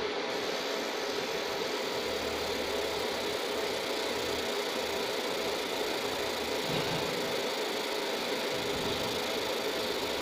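30 W fiber laser marking machine running steadily while engraving a brass plate: an even mechanical hum with a hiss over it, a higher hiss coming in just after the start.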